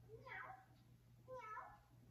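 A girl meowing like a cat, two drawn-out meows that rise and then fall, faint through a television's speaker.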